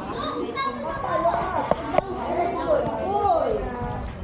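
Children's voices calling and chattering as they play in a swimming pool, with a short sharp sound about two seconds in.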